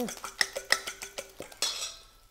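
A fork whisking eggs in a stainless steel bowl: repeated clinks of the metal tines against the bowl's side, with a short scrape near the end.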